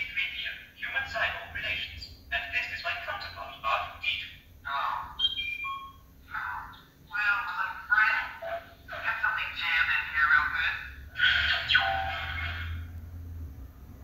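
Hallmark Storyteller ornaments playing Star Wars: A New Hope film dialogue through their small built-in speakers, thin and tinny, with R2-D2's beeping whistles about five seconds in and a low rumble under the voices from about ten seconds in.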